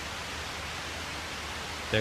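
Steady hiss with a low hum underneath: the background noise of an old recording, heard in a pause between spoken phrases. A man's voice starts again at the very end.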